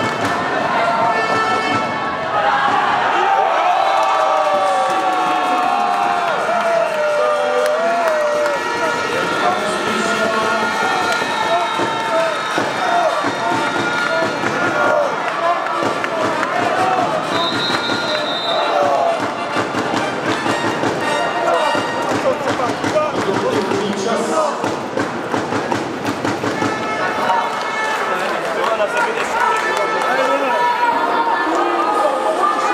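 Crowd of spectators in a reverberant sports hall: a steady din of many voices, cheering and chanting, with a wavering held note between about two and nine seconds in.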